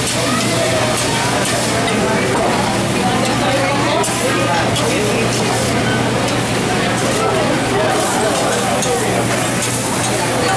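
Busy restaurant chatter over food sizzling on a teppanyaki griddle, with the chef's metal spatula clinking on the steel plate. A steady low hum runs underneath.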